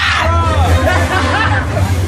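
Crowd of people talking over loud background music, with a steady low hum underneath and a short burst of hiss right at the start.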